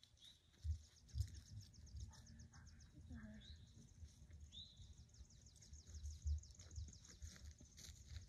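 Soft, irregular low thuds of footsteps on grass as a person and a dog walk. Behind them a songbird keeps up a high, rapid trill, with two short falling chirps in the middle.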